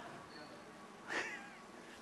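A quiet pause, broken about a second in by one short, high-pitched vocal squeak or call, faint against the room.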